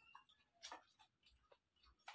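Near silence with a few faint clicks and soft taps from eating by hand out of steel bowls, the clearest about two-thirds of a second in.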